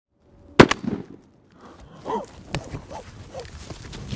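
A single shotgun blast about half a second in, then scattered thumps and rustling with a few short calls.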